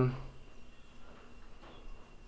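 A man's voice trails off at the very start, then quiet room tone with a faint steady high hum; no distinct sound stands out.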